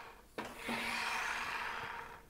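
Explanar training-aid roller running along the inside of the metal hoop during a swing: a sharp click about a third of a second in, then a steady rolling hiss.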